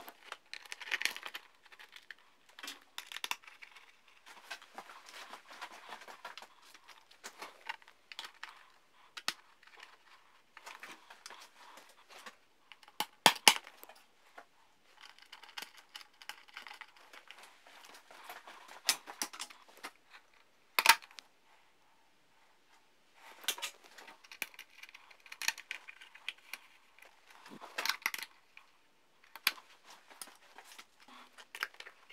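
Plastic bodywork of a motorcycle, its seat unit and rear fender, being handled and fitted by hand: rustling and scraping with many small clicks. A few sharp knocks stand out, two close together about halfway through and another a few seconds later.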